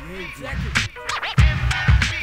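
Hip hop track with turntable scratching: short scratched vocal snippets sliding up and down in pitch over a beat, with heavy kick drum hits in the second half.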